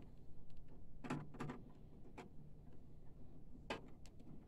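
Several light clicks and taps, about five spread over a few seconds, as a hand screwdriver works a screw into the sheet-metal front piece of a printer chassis, over a faint low hum.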